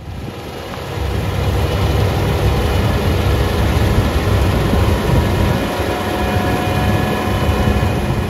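Combine harvester running in the field, a dense, steady low rumble that swells up over the first second.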